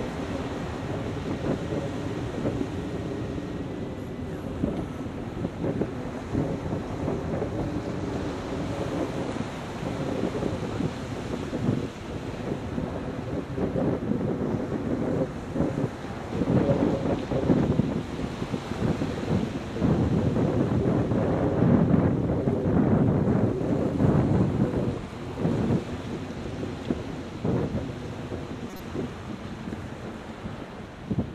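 Wind buffeting the microphone in uneven gusts, strongest in the second half, over a low rushing background of surf.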